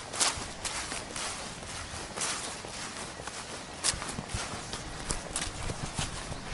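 Footsteps walking over mown grass strewn with dry leaves: irregular sharp crunches, the loudest just after the start and about four seconds in.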